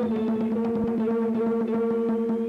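Live acoustic band music: a long held note over a steady drone, driven by quick conga strikes several times a second.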